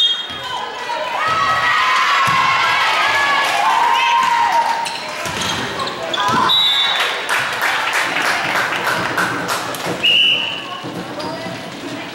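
Indoor volleyball play on a hardwood gym floor: the ball being struck and bouncing, sneakers squeaking and players calling out. A referee's whistle blows briefly at the start and again, loudest, about ten seconds in.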